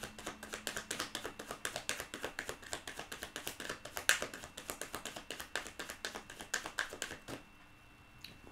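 A deck of tarot cards being shuffled by hand: a rapid run of soft card slaps and flicks that stops about seven seconds in.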